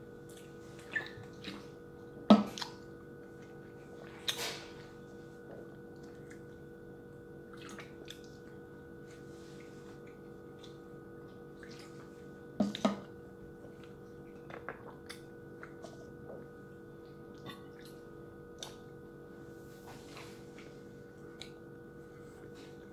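Scattered knocks and clicks of a drink bottle and tumbler being handled and set down, with swallowing and chewing sounds, over a steady room hum. The two loudest knocks come about two seconds in and again around twelve seconds.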